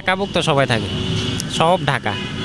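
A man's voice speaking in two short stretches, over a steady background of street noise.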